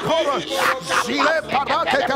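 A voice praying rapidly aloud in words that are not English, over sustained background music.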